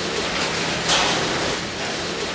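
Steady rushing background noise inside an intensive pig barn housing a pen of piglets, with a short louder burst of noise about a second in.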